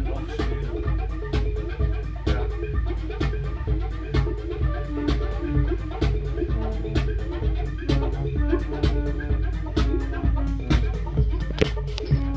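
Electronic music played live on hardware synthesizers and a drum machine: a heavy, steady bass under an even beat of percussive hits, with short repeating synth notes over it.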